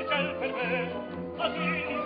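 A man singing an opera aria in full voice with a wide vibrato, accompanied by an orchestra holding low sustained notes; he starts a new phrase right at the start and another about one and a half seconds in.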